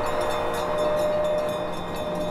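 Sustained, steady drone of the background score: several held tones over a continuous hiss, with no beat or melody.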